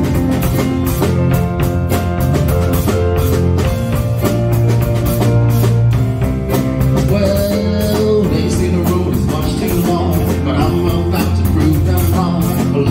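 Live rock band playing: electric guitar, bass guitar and drum kit keeping a steady beat.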